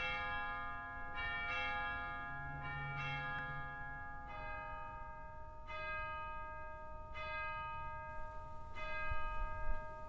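Bells ringing a slow sequence of single notes, a new note struck about every one to one and a half seconds, each ringing on and fading under the next.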